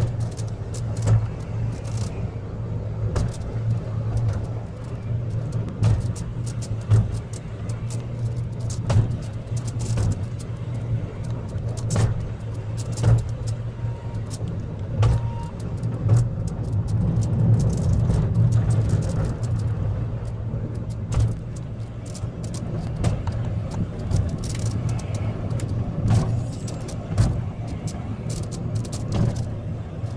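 Funicular car running along its rail track: a steady low rumble with irregular sharp clacks from the wheels and track.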